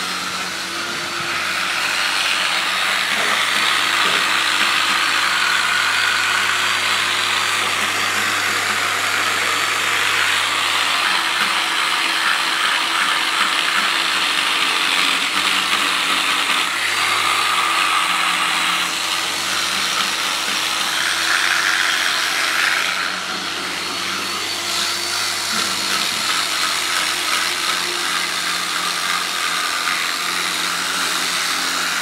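Handheld electric buffer with a polishing wheel running against a polished aluminum trailer rail: a steady motor whine under the scrub of the wheel on the metal. It dips briefly about three-quarters of the way through.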